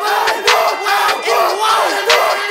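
A break in a trap metal song: many voices yelling together like a shouting crowd, over a few sharp percussion hits, with the bass cut out.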